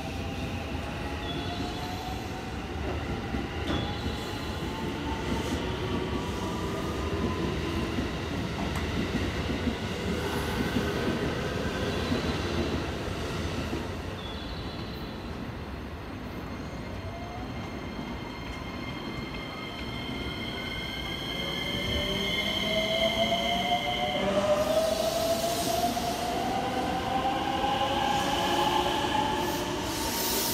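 JR West 225 series electric train pulling away from the platform. Its inverter-driven traction motors give a rising whine as it picks up speed, over a louder rumble of wheels. A fainter rising whine is also heard in the first several seconds.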